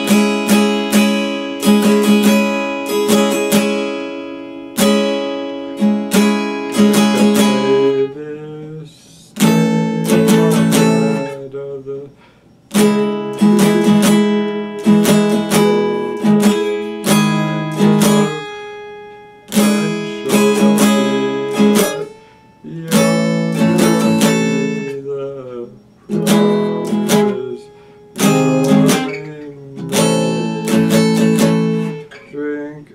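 Acoustic guitar being strummed, chords struck in short runs that ring and fade, with brief pauses between phrases where the strings die away.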